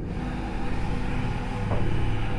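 Steady, low ambient drone of meditation background music, with no beat, holding on through a pause in the narration.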